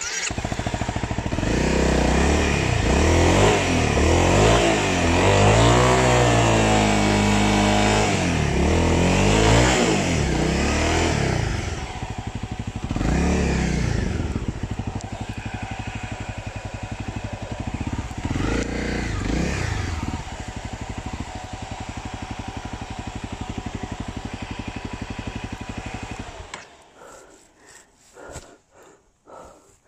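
Dirt bike engine comes in suddenly and is revved up and down several times, then runs steadier with an even pulse before cutting off a second or so before the end.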